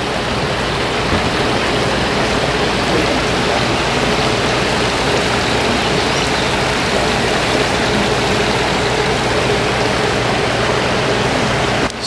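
Shallow rocky creek rushing steadily over stones, with a faint steady hum underneath.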